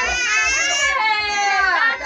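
A baby crying: one long, high-pitched wail that falls in pitch near the end, with adults' cheering voices alongside.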